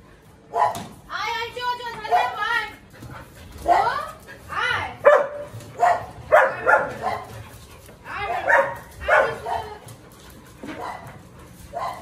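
Dogs howling and whining in a run of pitched calls with sliding pitch, the longest held for about a second and a half early on; the Siberian husky's howling sets the household dogs off.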